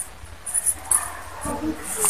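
A young woman crying softly between sentences, with brief whimpers and sniffling breaths.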